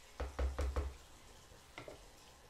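Four quick knocks in under a second, then a softer one near the end, at a bathroom sink, over a faint running tap.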